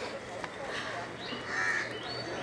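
A crow cawing faintly in the background, once, near the end.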